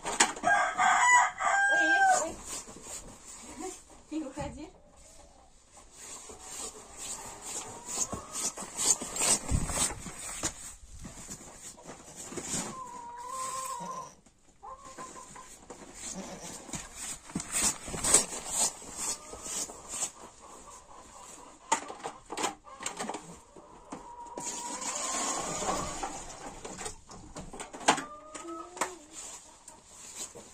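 A rooster crowing loudly at the start, with shorter calls around the middle and near the end, among scattered knocks and rustles of plastic buckets being handled on a hay-covered floor.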